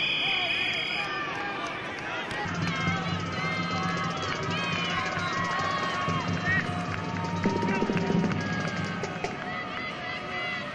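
Spectators and players shouting and calling out at a football game, many voices at once. A whistle sounds through the first second, and low held notes come and go from about two and a half seconds in until about nine seconds.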